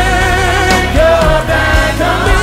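Live gospel music: a male lead singer holds wavering notes, backed by a choir and a band with piano, bass and drums.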